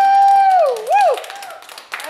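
A person's long, high, held "mmm" of appreciation that slides down in pitch, then a second short rising-and-falling "mm", over scattered clapping.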